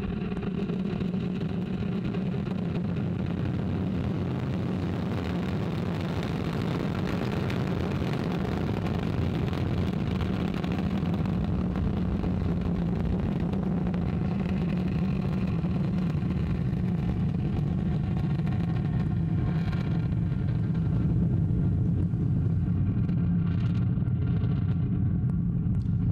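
Ariane 5 ECA lifting off, its two solid rocket boosters and Vulcain 2 core engine burning together. The sound is a steady deep rumble that swells slightly about two-thirds of the way through as the rocket climbs away.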